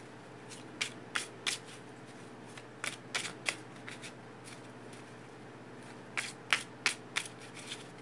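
A deck of tarot cards being shuffled by hand, packets of cards pulled from one hand into the other, giving short clusters of sharp card snaps with pauses between: about a second in, around three seconds in, and again near the end.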